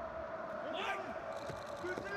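Pitch-side sound of a professional football match in an empty stadium, with no crowd: a faint steady hum and a short distant shout from a player about a second in.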